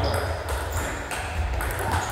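Table tennis rally: a few quick, sharp clicks as the ball is struck by the bats and bounces on the table, some with a brief high ring, over a steady low hum in the hall.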